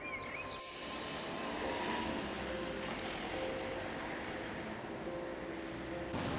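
A bird chirps at the very start. About half a second in, it gives way to the steady rushing noise of a passing vehicle, which grows slightly louder and then holds.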